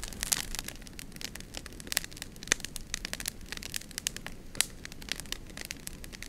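Wood campfire crackling with many irregular sharp pops; the two loudest snaps come about two and a half and four and a half seconds in.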